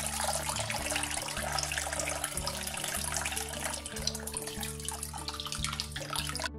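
Water poured steadily from a plastic jug into the braising liquid in an enamelled pot, splashing into liquid as the pot is topped up to cover the ham.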